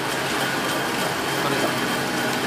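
Machine running steadily, an even drone with a constant low hum and a faint high whine.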